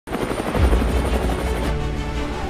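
Light helicopter hovering, its rotor chopping in a fast even beat over a deep rumble with a thin high turbine whine, cutting off sharply near the end; music plays underneath.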